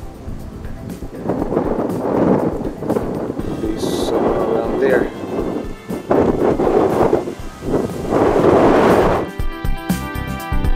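Wind buffeting the camera microphone in repeated loud gusts, over faint background music that comes to the front near the end.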